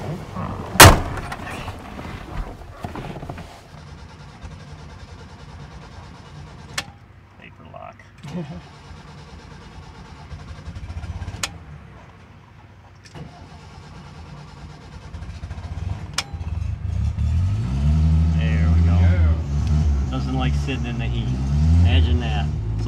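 A loud sharp thud about a second in, then a few light clicks, and at about sixteen seconds the Fiat 600 Multipla's rear-mounted four-cylinder engine starts, is revved up and down a few times, and settles into steady running.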